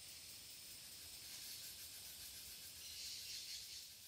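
Faint high-pitched hiss, swelling briefly about three seconds in.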